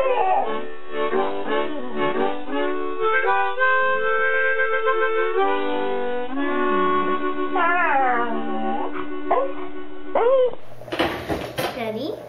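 A dog howling along to music with held, stepping chords; its howls rise and fall in pitch over the steady tones, most clearly at the start and about eight and ten seconds in. Near the end the sound cuts to a burst of noise from another recording.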